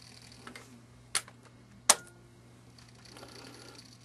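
N scale GE 70-ton model diesel locomotive on a Kato chassis running slowly through a model railway crossover: a faint steady hum with two sharp clicks, about a second in and just before two seconds in.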